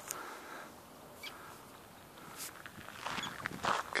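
A few brief, faint calls from Arctic terns flying overhead. Crunching footsteps on a gravel path begin about three seconds in.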